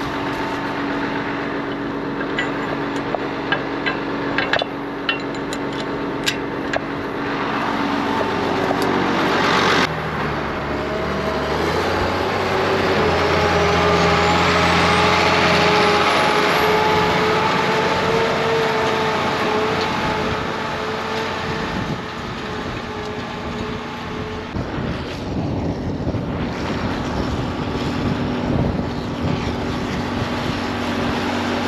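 Ford 8830 tractor's six-cylinder turbo diesel working under load, pulling a tine cultivator deep through the soil, with sharp clicks and knocks in the first several seconds. After an abrupt change about ten seconds in, the engine grows louder with a rising whistle as the tractor passes close, then fades as it pulls away.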